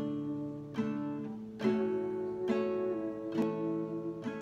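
Acoustic guitar strumming chords, a new strum about every second, each chord left to ring into the next.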